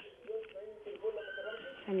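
Faint, muffled voices coming over a telephone line, thin and cut off in the highs. A single click at the start, and clearer speech begins near the end.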